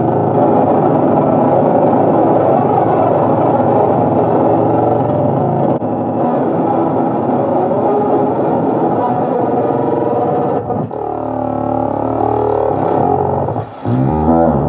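LEFA urANO FUZZ pedal, with its fuzz and 'oscillokaos' oscillator circuits engaged on an electric guitar, giving a dense, chaotic fuzz noise. About eleven seconds in it turns into a warbling tone that sweeps up and down in pitch, then cuts out briefly just before the end.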